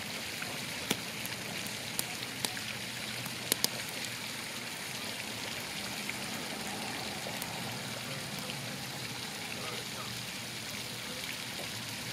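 Split logs burning in a metal fire pit: a steady soft hiss with a handful of sharp crackling pops, most of them in the first four seconds.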